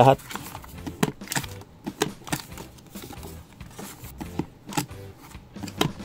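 Handheld corner-rounder punch being pressed down on a plastic PVC card, with the card handled between presses: a run of sharp clicks and knocks at irregular intervals.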